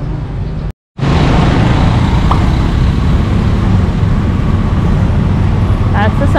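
Busy city street traffic, loud and steady: tuk-tuks, cars and motorbikes running and passing. The sound cuts out abruptly for a split second just under a second in, then comes back louder.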